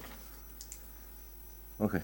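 Quiet room tone with a few faint, light clicks of papers being handled at a table, then a man's short "OK" near the end.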